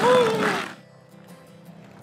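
Skateboard wheels rolling on tarmac, stopping under a second in, with a short vocal exclamation over the start; after that only faint background music.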